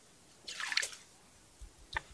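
Brief water splash as a small perch is pulled up out of the ice-fishing hole on the line, about half a second in.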